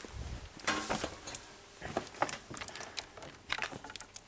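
Handling noise of audio leads and plugs being moved about: scattered small clicks and knocks, with a brief rustle about a second in.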